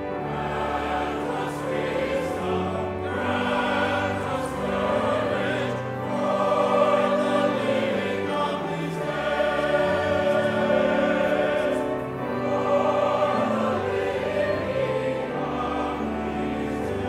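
Church choir singing, over long held low notes.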